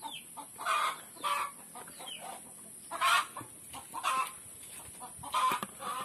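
Chickens clucking: a string of short calls, roughly one a second.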